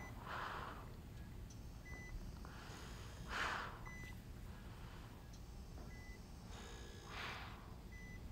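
Bedside patient monitor giving a short, high beep every two seconds, with three soft breaths between the beeps.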